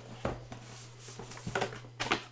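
Cardboard boxes being handled: the drone's retail box is slid out of its outer packaging and set down, giving a few dull knocks and scrapes of cardboard, about a quarter second in and again around a second and a half in. A steady low hum runs underneath.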